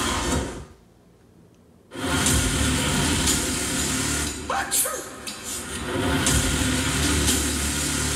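Horror film trailer sound design: after about a second of near silence, a sudden loud hit about two seconds in opens into a steady low rumbling drone with noise over it, which carries on to the end.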